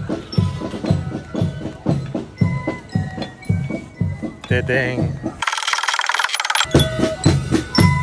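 A marching band of flutes and drums playing as it parades, with a bass drum beating about twice a second under the flute tune. About five and a half seconds in, the music is briefly broken by a second-long burst of hiss.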